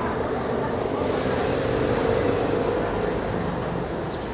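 Street traffic: a motor vehicle passing, its sound swelling to a peak about halfway through and then fading, over a steady street background.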